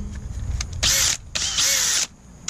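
Cordless drill with a rubber eraser wheel chucked in it, run in two short trigger bursts, the second a little longer, its motor whine bending in pitch as it spins up and down.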